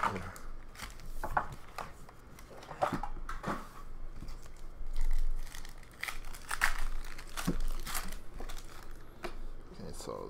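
Foil trading-card packs being torn open and crinkled, in short scattered rustles and rips. A dull low bump about five seconds in is the loudest sound.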